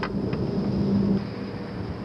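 Wind rumbling over a camcorder microphone, with a steady low hum underneath; the rumble eases a little after a second.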